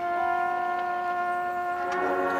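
Marching band holding one long, steady chord.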